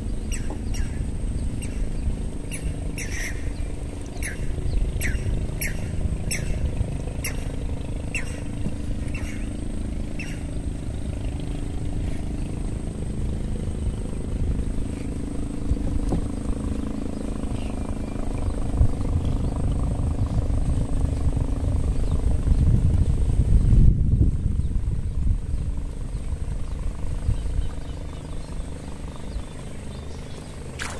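A boat engine drones steadily, growing louder to a peak about three quarters of the way through and then easing off. Over the first ten seconds a bird gives short sharp chirps, about one or two a second.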